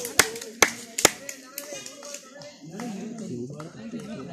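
Rapid, evenly spaced hand claps, about five a second, that thin out and stop about a second in, followed by voices.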